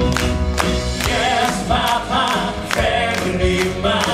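Male voices singing a musical-theatre number into microphones over live band accompaniment, with regular drum hits.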